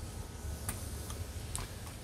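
Two faint light clicks about a second apart as small metal parts of a Rochester 2G carburetor are handled, over a steady low background hum.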